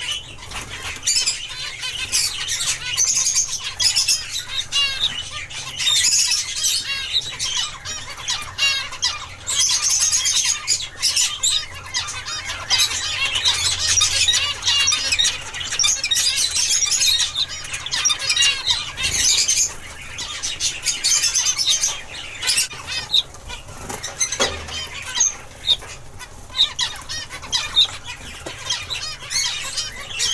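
A flock of zebra finches calling together: many short, high-pitched calls overlap into a dense, continuous twitter, thinning briefly past the middle.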